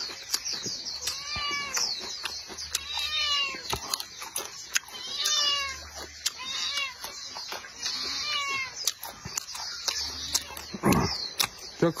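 Close-up eating sounds, chewing and sharp clicks, while an animal calls about five times in short cries that rise and fall in pitch, spaced a second or two apart.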